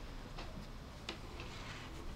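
A few faint clicks of metal knitting needles knocking together as two stitches are knitted together.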